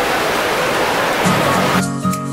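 Steady noisy hubbub of a busy indoor space, with background music coming in under it about a second in; near the end the ambient noise cuts out and the music, with a steady beat, takes over.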